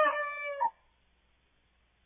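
A young cockerel crowing: one short crow, already under way at the start and cutting off about two-thirds of a second in.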